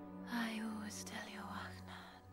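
A whispered line, breathy and unvoiced, over a soft orchestral film score with long held notes.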